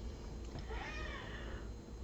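A pet cat meowing faintly: one soft, arching meow about half a second in.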